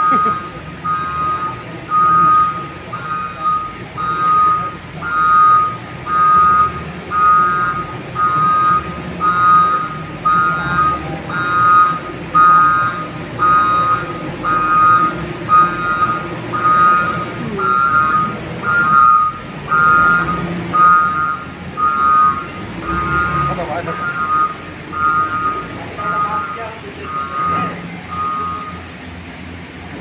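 Vehicle reversing alarm beeping, loud electronic beeps about once a second, stopping a second or two before the end.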